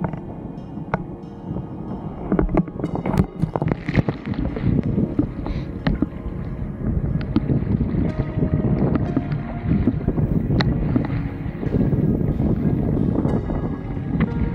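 Water splashing and wind buffeting the microphone of an action camera on a wingfoiler, a dense crackle of small knocks and rushes. Background music plays underneath.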